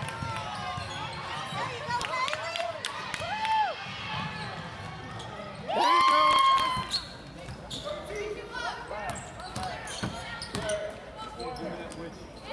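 Basketball game in a gym: spectators shouting and calling out, with a ball bouncing on the hardwood floor. About six seconds in comes a loud held shout lasting about a second.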